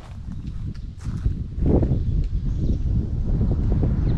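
Low, uneven rumble of wind buffeting the microphone, louder from about halfway in, with scattered light clicks and knocks.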